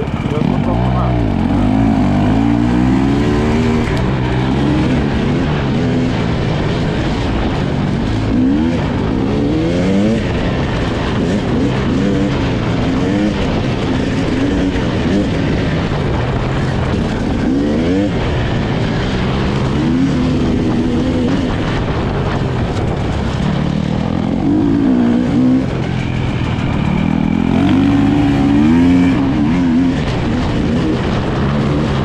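Husqvarna enduro motorcycle engine under hard riding, its pitch climbing and dropping again and again as the throttle is opened and closed.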